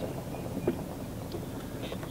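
Low, steady wind rumble on the microphone, with a couple of faint clicks.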